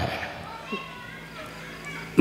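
Faint, scattered chatter of children's voices in the audience, over a low steady hum from the public-address system.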